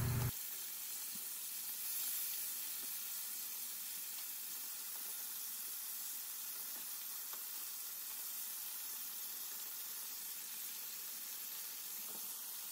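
Breaded chicken thighs shallow-frying in a skillet of hot oil: a steady sizzle with a few faint pops.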